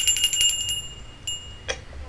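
A small hand bell shaken rapidly: a fast run of high metallic rings that fades out within the first second, followed by a couple of faint clicks.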